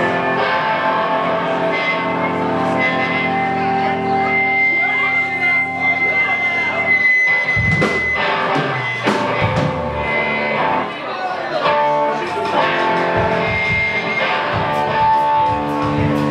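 Live rock band playing: amplified electric guitar and bass guitar holding long, ringing notes, with drum hits coming in about halfway through.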